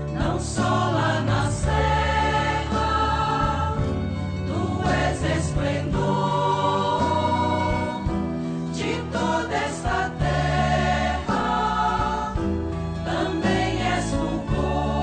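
Sacred choral music: a choir singing a hymn in long held notes over instrumental accompaniment with a steady bass.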